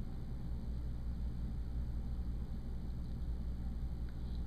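Steady low background hum and rumble with no distinct events.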